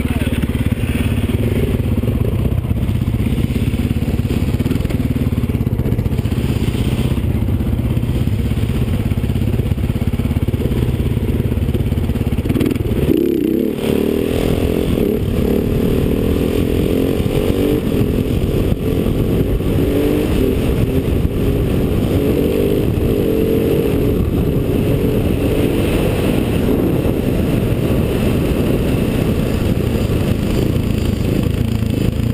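Single-cylinder supermoto motorcycle engine heard close up from the rider's helmet, running at low revs for about the first half. From about halfway it is under load: revving up and down as the throttle opens and closes through a wheelie and a run down the concrete strip.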